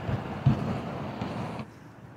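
Steady outdoor noise of road traffic and wind on the microphone, with a single low thump about half a second in; the noise drops away suddenly near the end.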